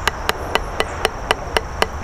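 Wooden drumsticks tapping a rubber drum practice pad in an even, steady stroke pattern, about four accented taps a second with lighter strokes between.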